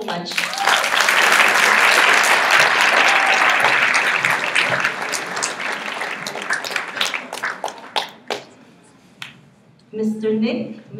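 Audience applauding in a large hall: a full round of clapping that thins to scattered claps and dies away about two-thirds of the way through.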